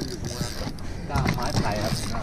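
Spinning reel clicking and creaking under load as a hooked fish is fought on a hard-bent rod.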